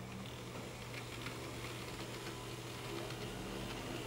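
N-scale model diesel locomotive running slowly through turnouts: a faint motor hum with light, irregular ticking of the small wheels over the rails.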